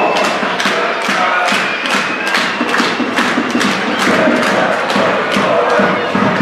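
Football supporters chanting in chorus to a steady, evenly spaced drumbeat from the stand.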